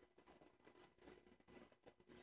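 Near silence: room tone with a few faint, soft rustles.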